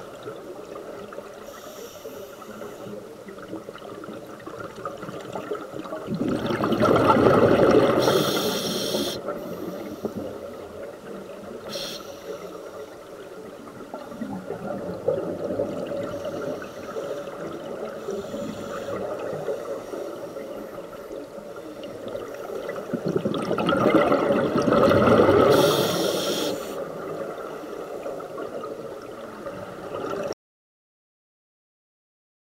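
Scuba diver breathing through a regulator underwater: hissing and bubbling throughout, with two long, loud surges of exhaled bubbles, one about six seconds in and one about three-quarters of the way through.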